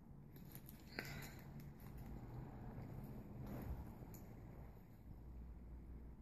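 Faint sounds of a child eating a burger: handling of the bun and its paper wrapper and quiet chewing, with one sharp click about a second in.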